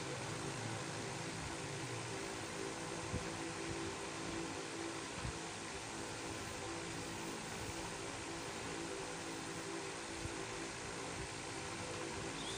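Steady background hum and hiss of a running machine, such as a room fan, with a few faint soft knocks scattered through it.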